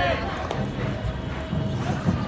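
Kabaddi match ambience: a voice and music over a noisy background, with a few sharp knocks.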